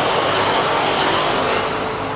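Power tool driving screws on a harvester assembly line, giving a steady hissing whir for about a second and a half before it cuts off.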